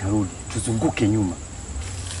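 A man talking in short phrases, with a steady high-pitched insect drone behind his voice.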